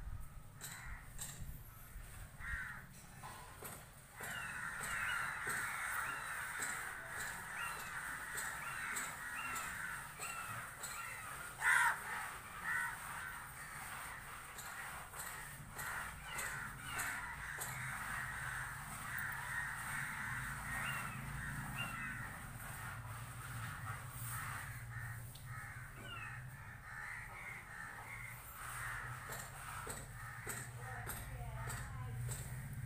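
Crows cawing repeatedly, several calls overlapping, with one louder sharp sound about twelve seconds in.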